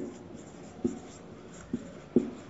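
Marker writing on a whiteboard: three short strokes of the tip about a second apart.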